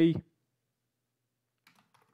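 Near silence, then a few faint computer keyboard key clicks near the end as typing begins.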